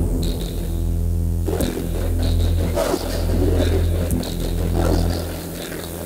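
Electronic sound from a light-sensor-controlled sound art installation, generated in Renoise with the MicroTonic drum synth: a steady low drone under a pitched tone that breaks into a rough, noisy texture about a second and a half in, with short high blips scattered through. The sound shifts as a hand shades the light sensors, and drops back after about five seconds.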